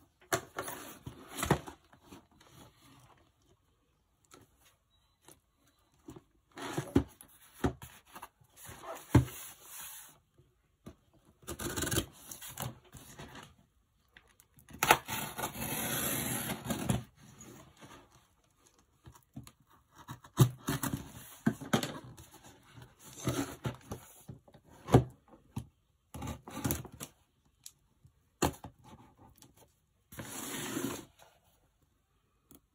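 Cardboard shipping boxes handled on a tabletop: irregular bursts of rubbing and scraping with short knocks as they are turned and shifted, and a longer scrape of about two seconds midway. Packing tape holds the two boxes together as they are worked apart.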